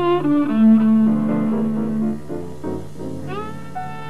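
Jazz violin playing a melody with a small band, sliding into its notes and holding one long note from about half a second in, over a steady bass note.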